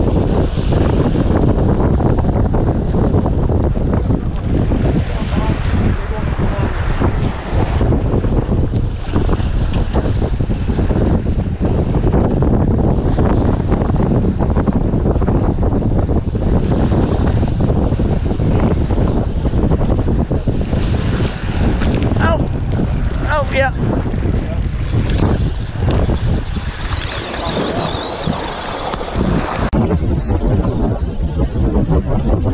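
Strong wind buffeting the microphone, loud and steady, over waves washing against the jetty's rocks.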